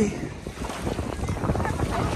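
Wind buffeting a phone microphone at the water's edge, over the soft wash of small waves in calm shallows.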